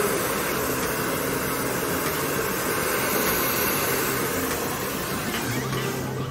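Handheld hair dryer running close by, a steady rush of blown air that eases off slightly near the end.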